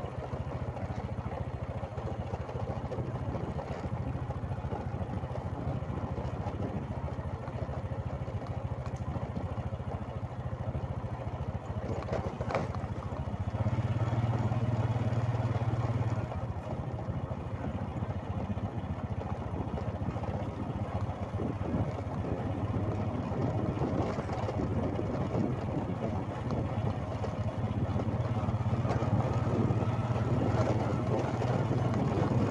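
Small motorcycle engine running steadily at low speed, with road and wind noise. The engine note grows louder for a couple of seconds around the middle and again near the end.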